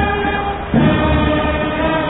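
A small group of men singing together in unison, holding long notes and moving to a new note about three quarters of a second in.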